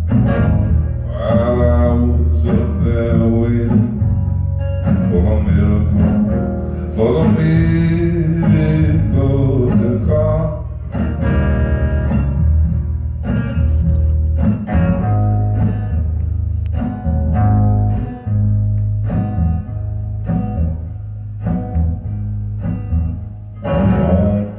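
Live solo acoustic guitar strummed steadily, with a man singing a slow melody over it, most strongly in the first ten seconds or so.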